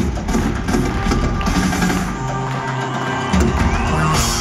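A live band plays in an arena, recorded from the audience. Regular drum hits stop about a second and a half in, leaving held low notes, and the full band comes back in louder shortly before the end.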